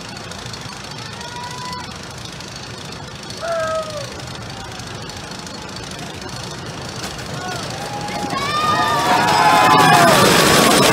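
A wooden roller coaster train approaching, its rumble on the wooden track growing louder through the last few seconds, with riders screaming over it as it passes. A few short distant cries sound earlier.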